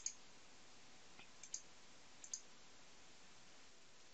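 Faint computer mouse clicks, about four short clicks spread over the first two and a half seconds, against near silence.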